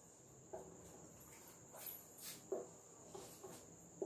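Faint squeaks and taps of a marker pen writing on a whiteboard, a handful of short strokes spread through, over a steady faint high-pitched whine.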